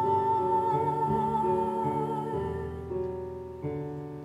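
A young woman's solo singing voice holding a long note with vibrato over piano accompaniment. The voice stops about two-thirds of the way through, and a piano chord is struck near the end and left to fade.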